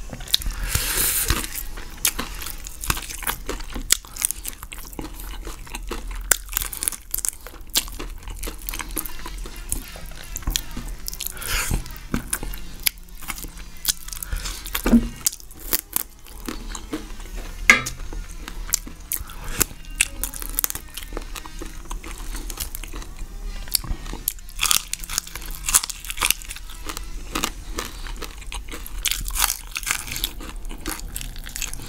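Close-miked eating of fried chicken by hand: a continuous run of crunching bites and chewing as meat is bitten and gnawed off the bone.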